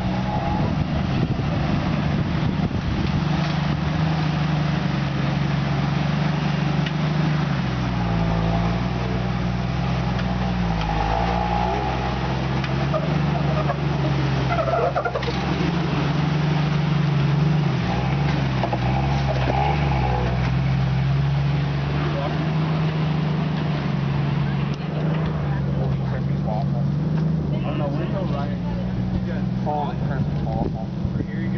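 Jeep Wrangler engine running under load as it crawls up a steep rock climb, its note steady for long stretches and dipping and rising with the throttle about a third and halfway through.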